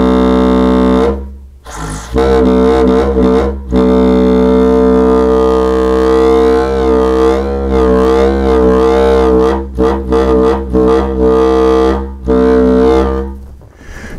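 Balloon bagpipe: air from an inflated balloon rushing out through its neck, stretched tight over the end of a pipe, makes the rubber film vibrate and sound a loud pitched drone. The tone drops out about a second in and again briefly a little later, wavers in pitch in the middle, stutters, then fades out near the end.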